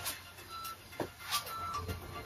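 Faint electronic interval-timer beeps, short high tones about a second apart, counting down the last seconds of an exercise interval. There are a couple of soft taps from feet on a yoga mat.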